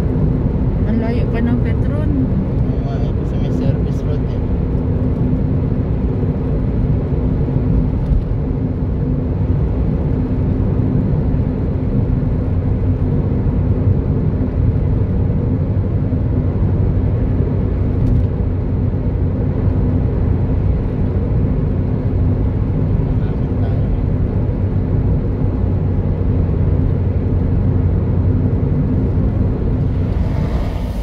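Steady road and engine noise heard from inside a car's cabin while it drives at highway speed: a constant low drone with a faint hum, and a few light clicks.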